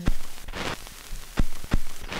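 Paintbrush worked in a plastic paint palette: a couple of brief scrubbing swishes, then a few sharp clicks of the brush against the palette.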